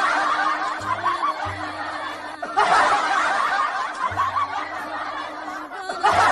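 Snickering laughter sound effect that starts over about halfway through, over background music with a low bass line.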